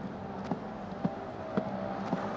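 Footsteps walking at about two steps a second, over a faint steady hum.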